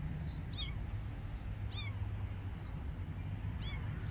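A frightened kitten crying: three short, high-pitched mews spread through the few seconds, thin enough to sound almost like a bird's chirp, over a steady low background rumble.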